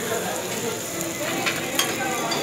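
Fried rice sizzling on a steel teppanyaki griddle while a metal spatula scrapes and chops through it, with a couple of sharp clacks of spatula on steel near the end.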